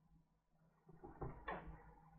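A smartphone picked up off the desk and handled: a few soft scrapes and knocks starting about a second in, the loudest around halfway through.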